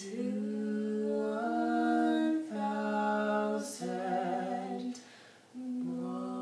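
A man and a woman singing long held notes in two-part harmony, unaccompanied, with the notes stepping to new pitches every second or so and a brief pause for breath about five seconds in.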